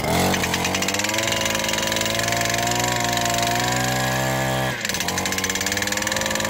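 Messer JH-70 petrol pile driver, its two-stroke engine revving up and hammering a 40×40 mm steel profile pipe through the small 55 mm driving cap in a fast, steady rattle of blows. About five seconds in, the throttle is eased and the engine drops back to a lower idling note.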